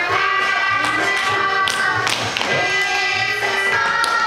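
Music playing for a children's dance class, with light taps of small dance shoes on a wooden floor.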